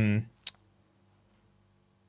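The tail of a spoken 'um', then a single short, sharp click about half a second in, followed by quiet room tone with a faint steady hum.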